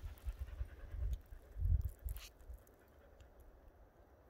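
Hard panting breaths with low muffled thumps, and a short crackle of dry brush about two seconds in, then it goes quieter.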